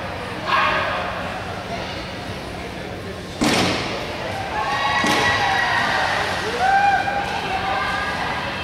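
Two sharp bangs, the first about three and a half seconds in and the louder, a second one about a second and a half later, ringing in a large hall. Raised voices call out over the second half.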